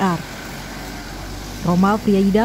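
Steady low engine rumble of a bus idling, heard in a short gap between speech.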